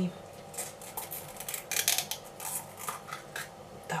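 Kitchen utensils clinking and scraping lightly against dishes, in short irregular knocks.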